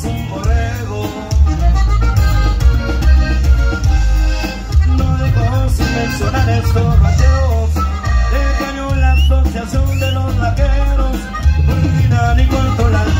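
A norteño band playing live: the accordion carries the melody over a pulsing bass and drums.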